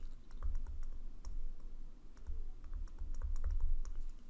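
A stylus tapping and scratching on a tablet surface while handwriting a word: irregular light clicks over a low rumble.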